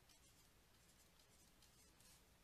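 Near silence, with very faint scratching and tapping of a pen writing a word on a digital writing surface.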